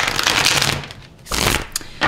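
A tarot deck being shuffled by hand: two loud rustling bursts of cards, the first lasting most of a second and a shorter one about a second and a half in.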